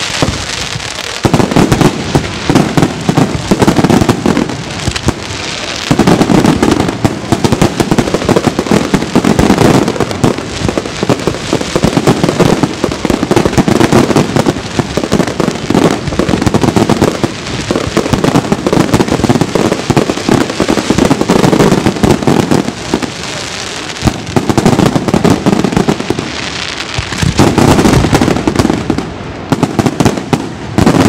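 San Severo-style daytime fireworks battery (batteria sanseverese): a dense, continuous run of loud bangs and crackles from bursting shells and firecrackers. It comes in long waves, with brief lulls about a second in, around five seconds and again from about 24 to 27 seconds.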